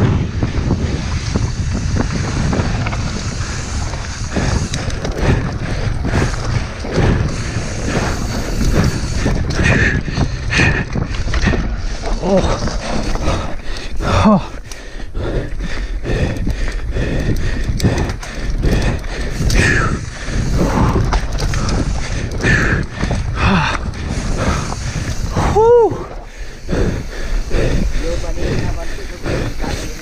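A mountain bike running down a rough dirt trail, wind rushing over the camera's microphone and the bike rattling over the ground in a steady rumble, with a few brief pitched sounds over it, the strongest near the end.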